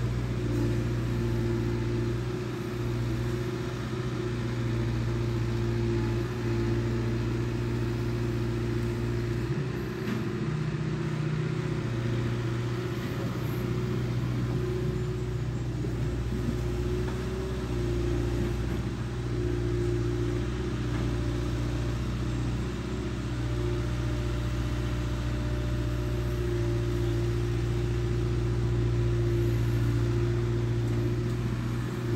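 Diesel engine of a Hitachi Zaxis long-reach excavator on a floating pontoon, running steadily under working load as the boom and bucket dig and lift river mud, with slight shifts in level.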